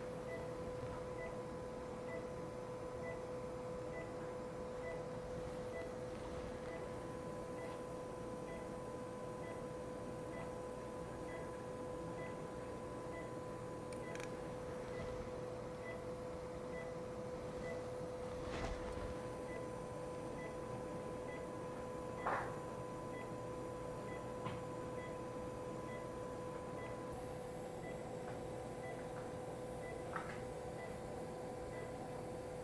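Operating-room background: a steady electrical hum with a faint regular beep about twice a second. A few sharp clicks of surgical instruments sound over it, the loudest about 22 seconds in.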